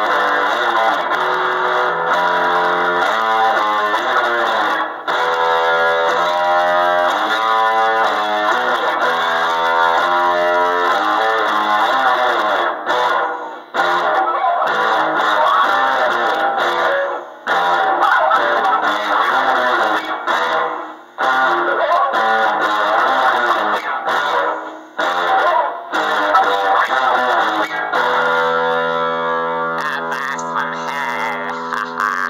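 Gear4music Precision-style electric bass played with a little reverb: held ringing notes changing about once a second, then denser playing with several brief breaks in the second half.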